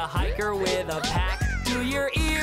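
Upbeat background music with a steady drum beat, with a cartoon bunny's wordless vocal sounds sliding up and down in pitch over it.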